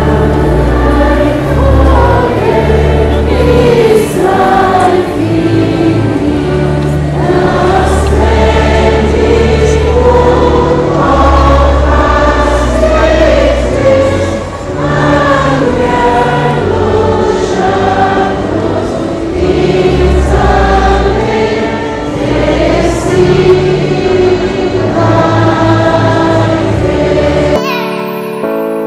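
A choir of schoolgirls singing a hymn together, over low sustained accompaniment notes that change every second or two. The singing cuts off abruptly near the end.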